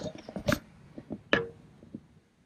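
A few irregular light clicks and knocks from hands and the handheld camera working against the underside of the van floor, the sharpest about a quarter of the way in and another about two-thirds in.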